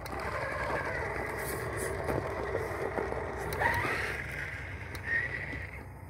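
Redcat Gen 8 RC rock crawler's electric motor and gears whining as it climbs over loose gravel, the pitch bending with the throttle and rising sharply a little past halfway, with small crunches and ticks from the tyres and stones.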